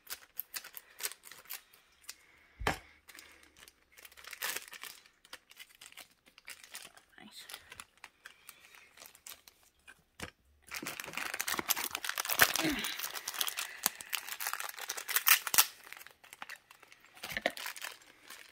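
Thin clear plastic parts bags being handled, crinkled and torn open. Scattered crackles come first, then a louder stretch of dense crinkling from about ten seconds in.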